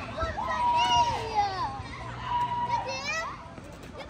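A young child's high voice holding long sung notes, twice, each falling away at its end.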